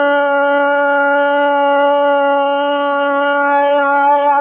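Male dengbêj voice holding one long, steady note in unaccompanied Kurdish song; it is the song's final held note.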